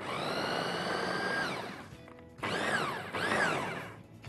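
Electric food chopper with stacked blades, its motor whining steadily for about two seconds, then winding down, followed by two short pulses that each speed up and die away. It is chopping onion, chili, tomato and herbs coarsely for a salad.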